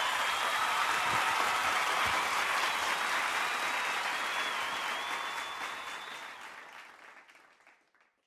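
Audience applause at the end of a live song, with a thin high whistle partway through, fading out to silence over the last few seconds.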